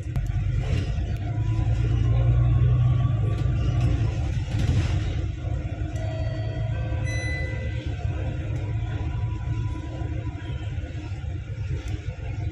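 Low, steady engine and road rumble heard from inside a moving bus, swelling about two seconds in. A few short pitched tones sound about six to eight seconds in.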